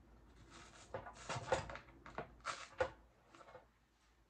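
Plastic packaging crinkling and dry Spanish moss rustling as handfuls are pulled out by hand, in a run of short bursts with a couple of light knocks, the loudest about one and a half and nearly three seconds in.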